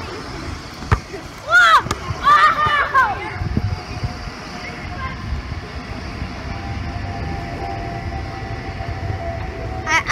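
Children's voices calling out for a second or two, just after a single sharp knock about a second in. Then a steady low outdoor rumble with a faint steady hum.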